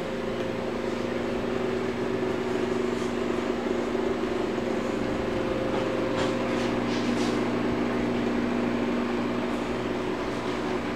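Steady mechanical hum with several even tones, like a running motor, and a few faint clicks about six to seven seconds in.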